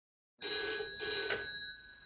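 Telephone bell ringing: a ring of bright metallic tones starting suddenly about half a second in, then dying away near the end.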